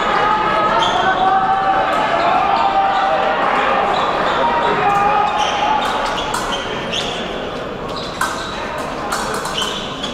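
Indistinct voices echoing in a large fencing hall, with sharp clicks and footfalls from fencers on the piste scattered through.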